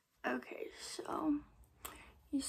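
A woman speaking very softly, close to a whisper, in short broken phrases, with a faint click near the end.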